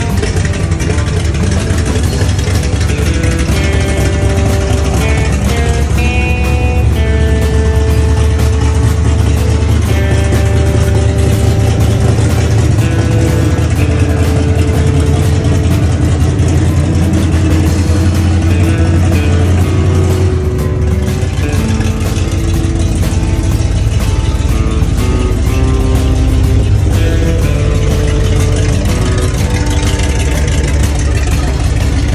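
The 1976 Chevrolet K10's 350 V8 running steadily, on its first run under its own power after restoration, with a low rumble that eases a little past the middle. Music with melodic notes plays over it.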